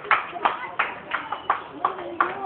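A group of karate practitioners striking in quick rhythm, each punch marked by a sharp burst of sound, about three a second.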